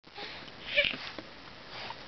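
A young baby's snuffly breathing, with a short breathy vocal sound less than a second in.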